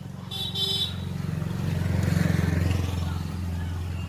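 A motorcycle passing by on the road, its engine growing louder to a peak midway and then easing off, with a brief high-pitched horn toot near the start.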